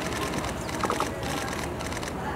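Steady outdoor street background noise, with a brief high chirp about a second in.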